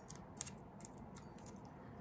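Faint small clicks and rustles of fingers peeling the paper backing off foam adhesive dimensionals and pressing them onto a cardstock panel, with one sharper tick about half a second in.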